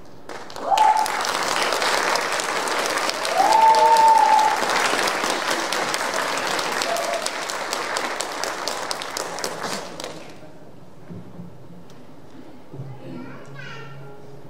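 Audience applauding, with a few short shouted cheers in the first few seconds; the applause dies away about ten seconds in. A faint voice is heard near the end.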